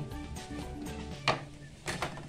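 Quiet background music with two sharp knocks, one about a second and a half in and a louder one near the end, as a plastic grated-cheese shaker is handled on a steel counter and its cap is pulled off.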